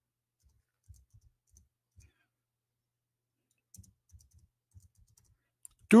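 Faint computer keyboard clicks in small scattered clusters, typing while a text is looked up on screen.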